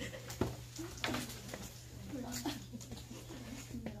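Faint, muffled voices murmuring in a room over a steady low hum, with two sharp knocks in the first second.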